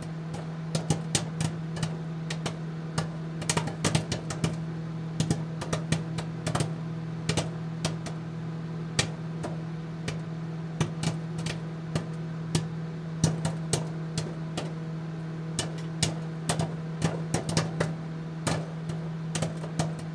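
Outro sound bed under the end card: a steady low hum with many irregular, sharp clicks and pops scattered over it, several a second.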